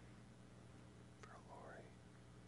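Near silence with a low steady hum; a little over a second in, a faint, distant voice speaks a few words.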